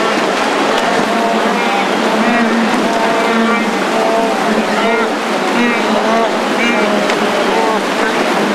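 A wildebeest herd crossing a river: a steady rush and splashing of churned water, overlaid by many short, overlapping grunting calls from the animals.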